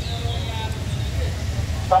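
Steady low rumble, with faint voices in the background.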